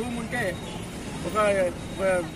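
A man speaking Telugu in short phrases, pausing for most of a second near the middle, over steady low background noise.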